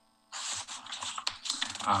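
A few people clapping: dense, uneven hand claps that start abruptly about a third of a second in, after a brief silence.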